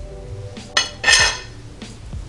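A metal fork clinks against a ceramic plate about a second in and rings briefly as a slice of chicken is set down, with quieter knife-and-fork sounds on a wooden cutting board. Faint background music underneath.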